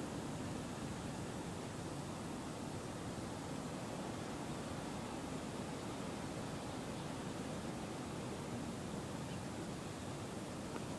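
Steady low hiss of outdoor background noise, with no distinct sounds standing out.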